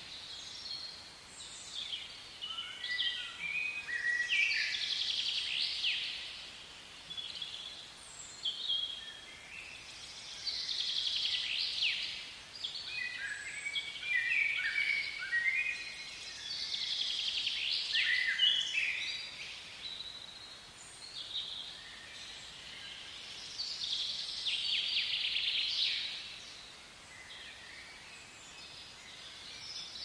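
Wild birds calling and singing: clusters of high chirps and chattering notes that swell and fade every few seconds, over a faint steady background hiss.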